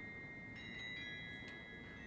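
Quiet mallet percussion music: soft, high, bell-like metal notes struck one at a time, a handful in two seconds, each ringing on and overlapping the next.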